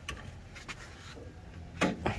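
New Holland TS90 diesel tractor engine idling steadily with a low hum and a light ticking clatter, running smoothly. A few faint clicks come through it.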